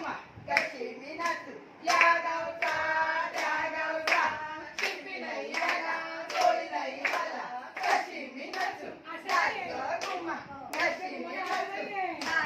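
A group of women clapping together in a steady beat, a little under two claps a second, with women's voices singing along.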